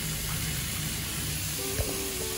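Tap water running steadily into a bathtub of soaking cherries, a continuous even hiss of pouring and splashing water.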